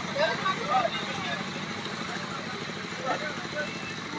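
Indistinct chatter of several people, with brief voice fragments, over a steady low background hum.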